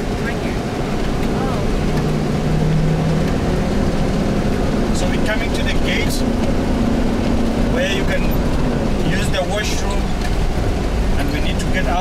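Tour bus engine and tyres on a gravel road, heard from inside the cabin while driving; the engine note climbs about two seconds in and eases off about nine seconds in. Passengers talk quietly in the background.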